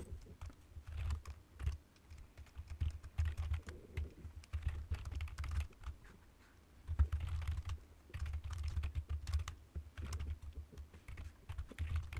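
Typing on a computer keyboard: irregular runs of keystrokes with dull knocks under them, pausing for about a second a little past the middle.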